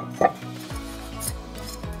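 A dry cloth wiping over a ceramic tile, with two sharp clacks near the start. Background music with a steady beat comes in just under a second in.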